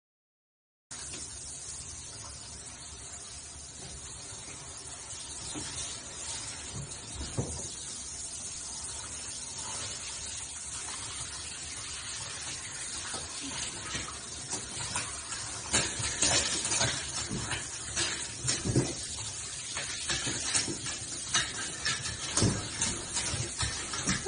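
Handheld shower head spraying water over an iguana on a bathroom floor, a steady hiss of spray starting about a second in, with splashes becoming more frequent and uneven in the second half.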